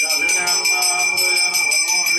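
Devotional music: bells ringing in a fast, steady rhythm, about four to five strokes a second, with voices singing underneath.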